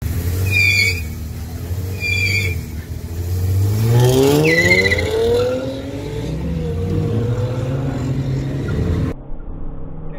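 VW Polo 1.4 engine with its exhaust clamp disconnected, giving a loud, open exhaust note. It idles, then revs and accelerates with a steeply rising pitch from about three seconds in, before settling to a steady drone. Short high squeals come about half a second and two seconds in and again in the middle, and the sound cuts off suddenly about nine seconds in.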